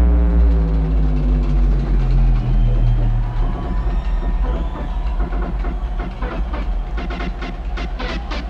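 Electronic dance music in a breakdown: a steady deep bass under a synth tone that slides down in pitch over the first few seconds, with the drums mostly stripped out. The beat's sharp percussive hits come back in about seven seconds in.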